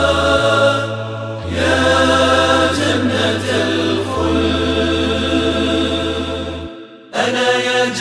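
Layered voices chanting the introduction of an unaccompanied Arabic nasheed, with human voices standing in for the instruments over sustained low bass notes. The sound breaks off briefly about seven seconds in, then the voices come back in.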